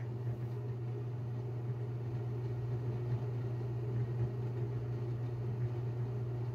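A steady low machine hum with no change in pitch, like a running fan or appliance.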